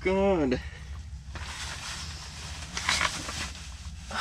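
A short, falling vocal exclamation, then a few seconds of rustling and shuffling from insulated snow pants and a folding camp chair as a man sits down, with a small clatter near the end, over a steady low hum.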